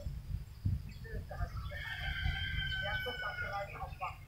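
A bird calling: one long held call of about a second and a half in the middle, sliding slightly down in pitch.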